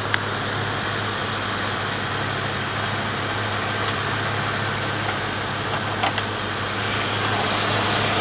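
Ford Mustang GT's 5.0-litre V8 idling steadily and smoothly. A sharp click comes just after the start and a lighter knock about six seconds in.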